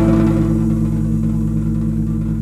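Hammond B-3 organ holding one sustained chord over a deep, steady bass note, with a fast, even wavering in the tone.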